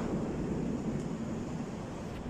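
Steady city street noise: a continuous low hum of road traffic.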